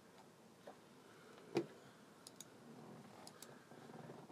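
A quiet room with one sharp click about one and a half seconds in, then two quick pairs of faint high ticks.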